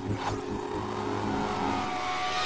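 Electronic channel-logo intro sting: sound-designed whooshes swelling over sustained low synthesized tones, with a brief falling high sweep near the start.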